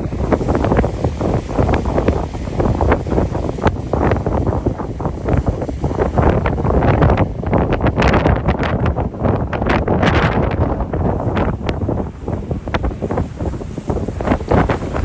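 Strong wind blowing across the microphone in uneven gusts, a dense low rumble with constant crackling buffets.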